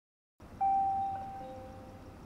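Two-note station announcement chime after a brief silence: a higher ding about half a second in, then a lower dong, both ringing on and fading slowly.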